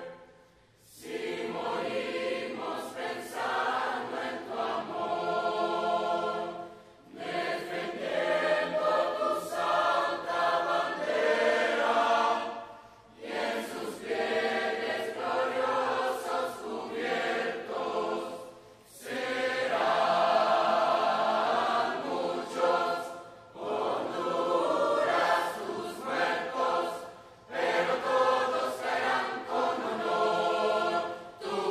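A large choir of young voices singing together in long phrases, with brief breaks between phrases every few seconds.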